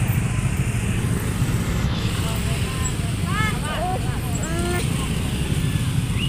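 Busy street-market ambience: a steady low rumble of traffic with indistinct voices of passers-by, which come through more clearly about halfway through.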